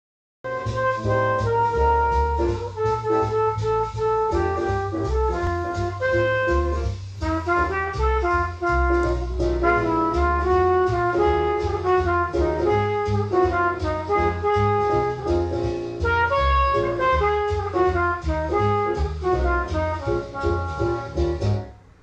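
Recorded music playing from a vinyl record through hi-fi loudspeakers: the instrumental introduction of a vocal jazz standard, a melody over a moving bass line. It starts about half a second in and dips just before the singing comes in.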